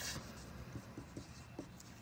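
Expo dry-erase marker writing on a laminated grid board: a few faint, short pen strokes.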